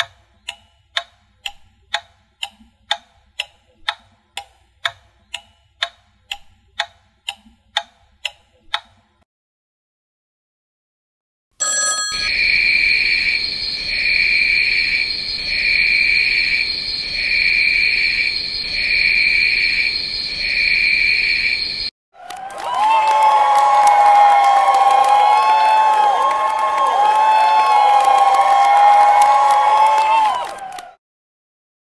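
Sharp clock-like ticking about twice a second for about nine seconds, then silence. A pulsing alarm tone beating about once a second follows for ten seconds, and then a loud bell rings continuously to the end.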